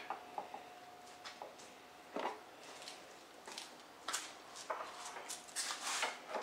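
Scattered light clicks and knocks of hands handling small parts, with one firmer knock about two seconds in and a run of clicks near the end. A faint steady whine sounds under them for the first two seconds and again from about five seconds in.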